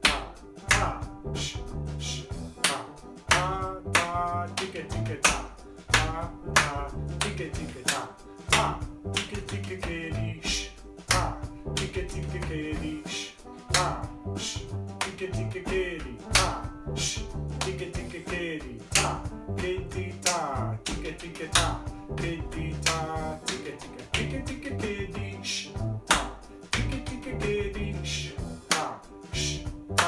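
Music backing track with a steady drum beat, with hand claps and body-percussion pats played in rhythm along with it.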